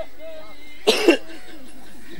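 A man's single short cough into the microphone, about a second in.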